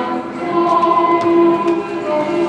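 Folk dance music with a choir of voices singing long held notes.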